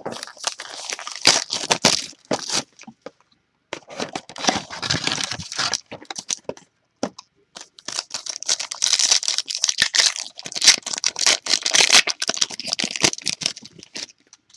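Foil and plastic trading-card packaging being torn open and crinkled by hand, in three crackly spells, the longest and loudest in the second half.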